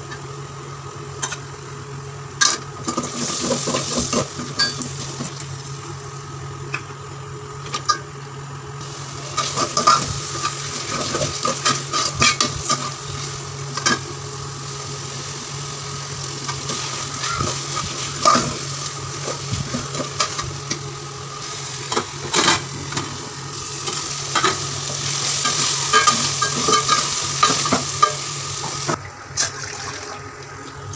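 A metal spoon scraping and knocking against an aluminium pot as a tomato and curd biriyani masala is sautéed, sizzling while it cooks. The scrapes come irregularly all through, over a steady low hum.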